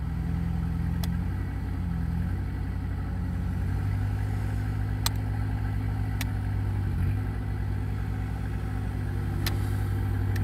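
Heavy vehicle engine running, its pitch shifting during the first few seconds and then holding a steadier, stronger note from about four seconds in, with a few sharp clicks.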